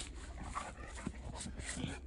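A dog breathing and sniffing faintly, with its nose down in the grass.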